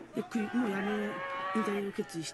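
A person's voice making a long, low, drawn-out sound, like a held 'ooh' or hum, that wavers in pitch and then holds for over a second.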